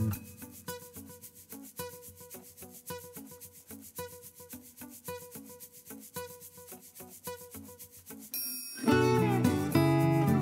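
A pencil scratching on a slip of paper in many short strokes as figures are written, with faint music underneath. Acoustic guitar music comes back in loudly near the end.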